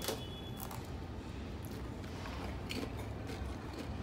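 Faint crunching of a Pringles potato chip being chewed: a few soft, short crunches over low background noise.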